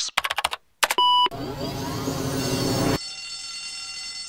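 Electronic sound effects from a channel intro: the synthesized voice breaks into a fast stuttering glitch, a short steady beep sounds about a second in, then a burst of noisy, static-like sound cuts off suddenly about three seconds in. Faint tape hiss from an old VHS recording follows.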